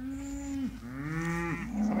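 Cows mooing: two long moos back to back, the second rising and then falling in pitch, with another starting near the end.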